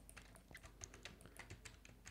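Faint computer keyboard key presses: a quick, uneven string of short clicks, from Blender modelling shortcuts being typed.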